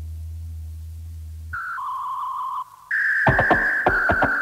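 Electronic tape music: a low steady drone gives way, about halfway through, to a high electronic tone that steps down in pitch. Near the end a louder, higher tone enters with a fast, irregular run of sharp clicks.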